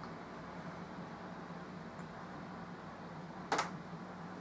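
Low steady hum of room tone, with one short sharp click about three and a half seconds in.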